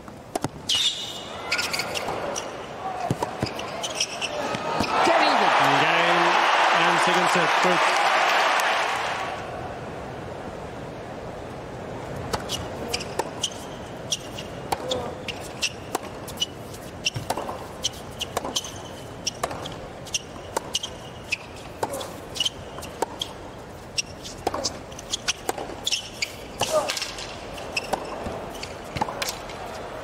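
Tennis rally on a hard court, with racket strikes and ball bounces, then a large stadium crowd cheering loudly for about four seconds as the set point is won. Play resumes with more ball bounces and racket hits over a low crowd murmur.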